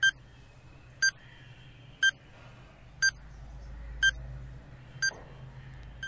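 Countdown timer beeping six times, one short high beep a second, marking the seconds left to answer.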